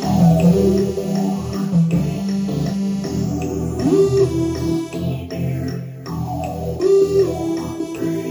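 Synthesizer keyboard being played: sustained chords and a melody whose notes slide upward in pitch about four seconds in and again near seven seconds.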